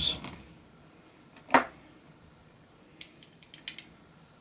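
A metal spatula clicking against a plastic bottle of sodium hydroxide and a small glass beaker as solid is scooped out and dropped in. There is one sharp tap about one and a half seconds in, then a quick run of light clicks near the end.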